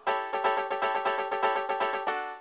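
Song accompaniment without vocals: one chord held and struck in quick, evenly repeated strokes, about ten a second.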